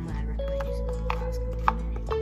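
Steady background music with three sharp taps from handling things on the kitchen counter; the last tap, near the end, is the loudest.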